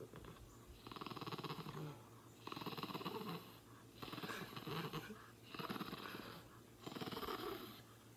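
Small dog growling with a tennis ball held in its mouth, five short rumbling bursts on successive breaths: possessive over its ball.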